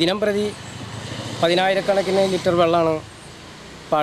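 A man speaking Malayalam, with a steady low motor-vehicle sound behind him that fades out about three seconds in.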